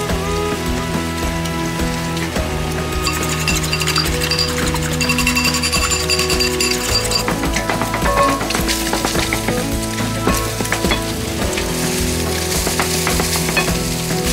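Egg and diced ham frying in a pan, sizzling while a wooden spatula stirs and scrapes, with many small clicks that grow denser about halfway through. Background music plays throughout.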